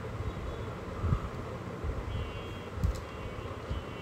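Water pouring into the drum of a Haier top-loading washing machine as it fills, a steady rushing, with a couple of low thumps.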